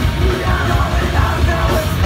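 A loud live heavy rock band playing: electric guitars, bass guitar and drum kit, with a shouted vocal over them.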